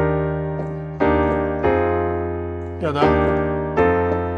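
Nord Stage keyboard playing a piano sound: Eb major 7 chords struck about once a second, each ringing and fading, then changing to an F7 chord near the end.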